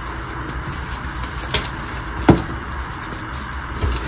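A painted gym chalk slab being crushed and crumbled between the hands, with a few sharp cracks as it breaks; the loudest crack comes a little past halfway. A steady low hiss runs underneath.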